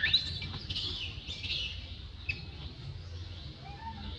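High-pitched chirping animal calls in quick succession over the first two seconds, a short sharp chirp a little after, then softer arched calls near the end.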